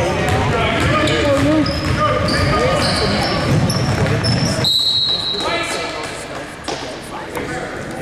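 Indoor basketball game sounds in a large echoing gym: a ball being dribbled on the hardwood floor, sneakers squeaking, and spectators talking and calling out. A longer high squeak comes about five seconds in.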